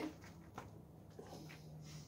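Faint sounds of a kitchen knife cutting into a block of freshly set homemade soap: a light click and soft scraping, with a faint low hum in the second half.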